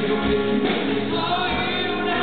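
Live pop ballad: a male singer's lead vocal over a band with backing vocals, carried by a steady low drum beat.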